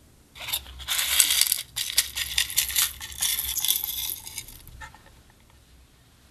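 Many small plastic flower sequins and beads poured out of a plastic heart-shaped tray into a glass dish: a dense, clicking patter of tiny pieces landing, lasting about four seconds and thinning to a few last clicks.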